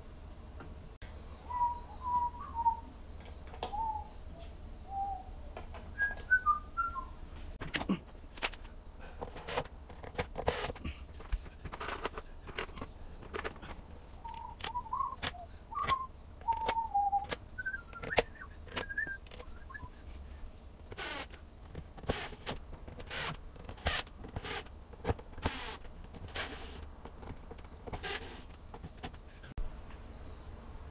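A person whistling a short tune, the same phrase twice, over sharp clicks and knocks of metal and plastic parts being refitted in a dishwasher tub. The knocks come thicker in the second half.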